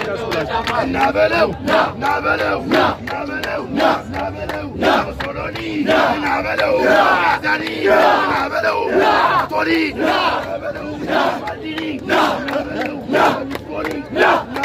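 A crowd of men shouting a rhythmic call-and-response war chant over and over, with many sharp claps among the voices.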